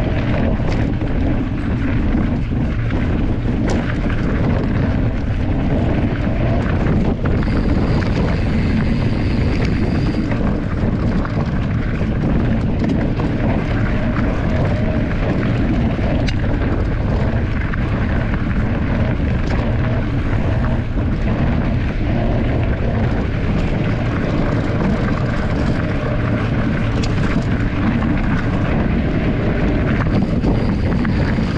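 Steady rumble of an electric mountain bike's knobby tyres rolling over a dirt and gravel trail, mixed with wind buffeting the bike-mounted action camera's microphone.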